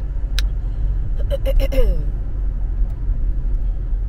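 Steady low rumble of road and engine noise inside a moving car's cabin. A single sharp click comes about half a second in. Near the middle there is a brief hummed vocal sound that slides down in pitch.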